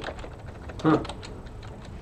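Typing on a computer keyboard: a run of light, irregular key clicks, with a short spoken "huh" about a second in.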